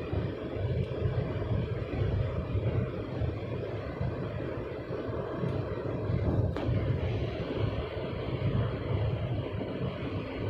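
Steady road and wind roar inside a Ford Figo Aspire's cabin at high expressway speed, mostly a low rumble from the tyres and engine. A single brief click comes about six and a half seconds in.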